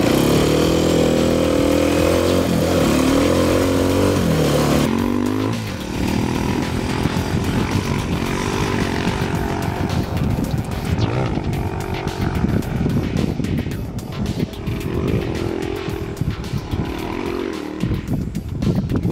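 Dirt bike engine revving and pulling away through the gears for about five seconds, its pitch climbing and dropping with each shift. After that, music with a steady beat takes over.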